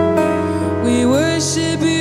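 Live worship band music: slow, held chords over a steady bass, with a voice sliding up in pitch about halfway through.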